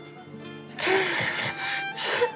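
Slow drama underscore of held string notes, with a woman's tearful, sobbing voice breaking in about a second in.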